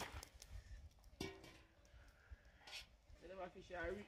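Mostly quiet, with a few light knocks of a metal spoon against a cooking pot as sauce is spooned over crackers, and faint voices near the end.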